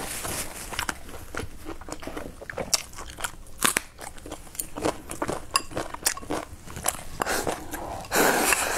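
Close-miked eating sounds: chewing and crunching with scattered sharp clicks, several of them louder, of chopsticks against a ceramic bowl.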